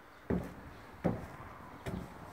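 Three short knocks from a person moving about inside an empty box trailer, about three-quarters of a second apart, with the boxy sound of the small enclosed space.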